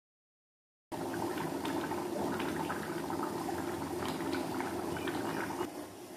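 Chicken curry with potatoes and papaya bubbling in a pot as it simmers, a steady run of small pops, starting suddenly about a second in.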